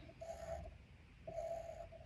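Two short scratchy pencil strokes on paper, each about half a second long, as lines are drawn into a cow catcher.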